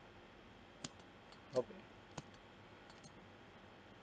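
A few faint, isolated computer mouse and keyboard clicks. About one and a half seconds in there is a brief voice sound that falls in pitch.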